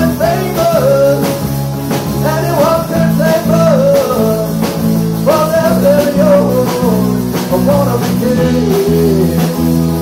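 Live rock band playing a song: drum kit with regular cymbal strikes, strummed acoustic guitar and electric guitars under a wavering melody line.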